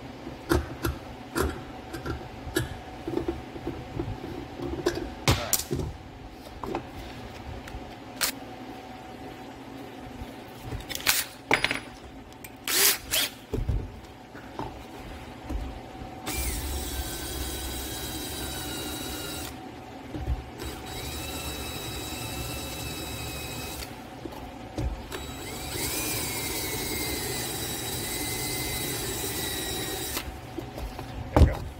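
Small clicks and knocks of a screw being turned by hand into a hollow plastic housing. About halfway through, a cordless drill takes over driving the screw in three short runs, its motor whine shifting in pitch as it works.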